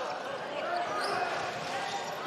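A basketball being dribbled on a hardwood court over the steady murmur of an arena crowd.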